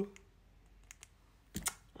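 Light handling noise from a small plastic skincare sample sachet held in the fingers: a few faint clicks, then one sharper click about one and a half seconds in.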